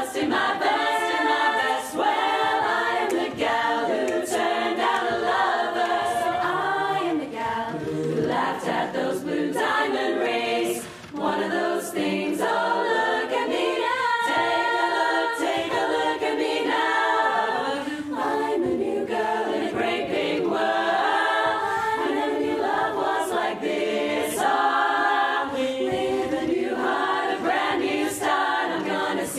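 Women's barbershop chorus singing a cappella in close four-part harmony, with a brief pause for breath about eleven seconds in.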